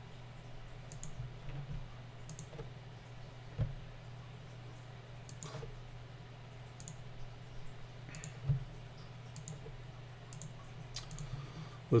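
Sparse, irregular clicks of a computer mouse, with a couple of louder soft knocks, over a steady low hum.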